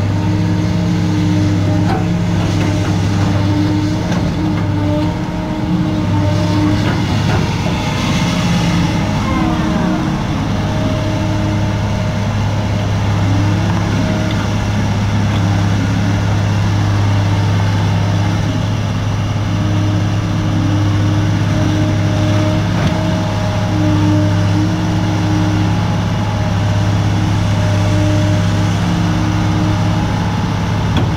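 Caterpillar M318C wheeled excavator's diesel engine running steadily while the machine works its boom and bucket, with a brief falling whine about nine seconds in.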